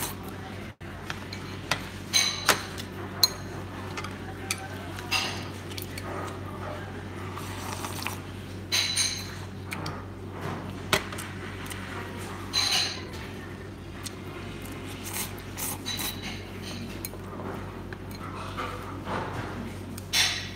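Chopsticks clicking and scraping against a ceramic rice bowl during eating, with scattered light taps and clinks of tableware.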